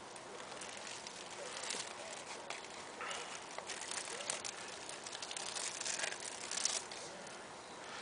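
Thin plastic packaging crinkling and rustling as a silicone keyboard cover is slid out of its sleeve, in faint irregular spells that are busiest from about three to seven seconds in.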